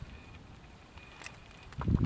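Quiet outdoor ambience with a low wind rumble on the microphone and a single faint click about a second in; a man's voice starts near the end.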